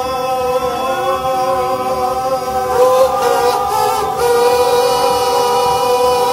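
Voices singing a sustained harmony, holding long steady notes in a chord that move to new notes a few times.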